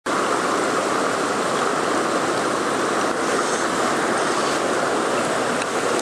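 Shallow mountain stream running over rocks, a steady close rush of water.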